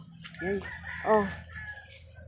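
A rooster crowing, a long held call.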